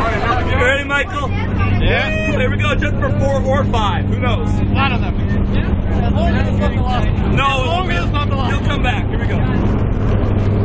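Steady drone of a small jump plane's engine heard from inside the cabin, with voices of the people aboard chatting over it, the words not clear.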